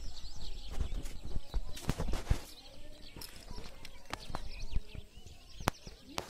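Birds chirping, with a run of sharp knocks and clicks about a second in and another single knock near the end, over a low rumble of wind or handling on the microphone.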